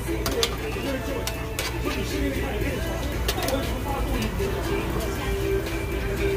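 Indistinct background voices and music, with several sharp clicks of metal tongs against the tabletop grill and its tray.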